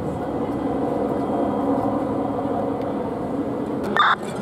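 Steady drone of fire engines running, with a sharp click just before the end.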